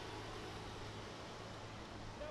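Steady, even hiss of background noise with a low hum under it.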